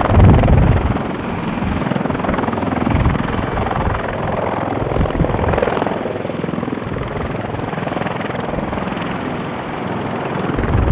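A CH-53 heavy-lift helicopter running on the ground with its rotor turning: steady rotor and turbine engine noise, loudest in the first second.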